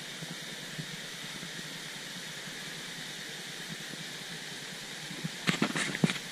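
Steady rush of a waterfall cascading into a rock pool, with a few sharp knocks near the end.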